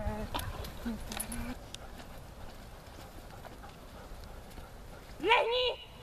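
A person's voice calling out a short two-syllable word in a raised, sing-song tone near the end, a dog-training command; this is the loudest sound. Earlier there is quiet spoken praise and a few faint clicks.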